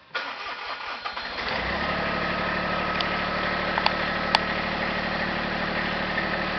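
Small tractor's engine cranked over for about a second and a half, then catching and settling into a steady idle. Two short clicks come a little past the middle.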